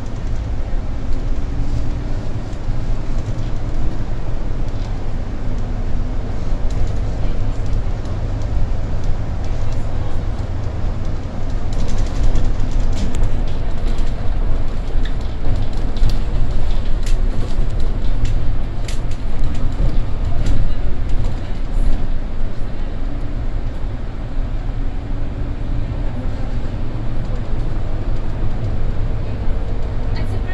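Solaris Urbino IV 18 articulated bus driving, heard from the driver's cab: a steady low rumble from the drivetrain and road. Through the middle stretch it is a little louder, with clicks and rattles.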